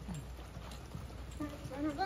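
Horses' hooves clip-clopping on the arena's dirt footing as several horses are ridden past. A person's voice starts calling out about one and a half seconds in.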